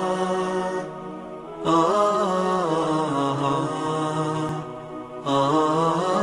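Programme intro theme: a chanted vocal melody holding long, ornamented notes, with no drums, in phrases broken by short pauses about a second in and near five seconds.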